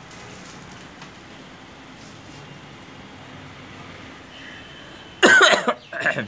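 A person coughing near the end: one loud cough burst, then a second, shorter one, over faint steady background noise.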